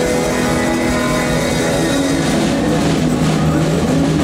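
Live rock band playing: drum kit, bass guitar and keyboard, with steady held tones and a tone sliding upward in pitch near the end.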